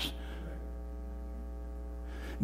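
Steady electrical mains hum: a low, even buzz with a ladder of overtones that does not change through the pause.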